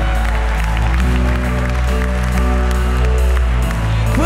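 Live worship band playing an instrumental passage of held bass and keyboard chords, the chord changing about a second in and again near the end, with the congregation applauding.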